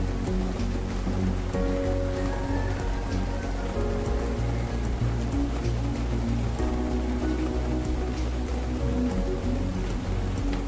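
Slow, calm instrumental music of held notes over a deep bass drone, mixed with the steady hiss of falling rain.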